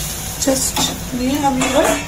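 Metal spatula stirring and scraping in a metal kadai, with a few clinks against the pan, while the curry gravy sizzles.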